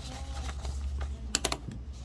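Sheets of printed paper being handled and turned over on a wooden desk, with a quick cluster of two or three sharp clicks about one and a half seconds in, over a steady low hum.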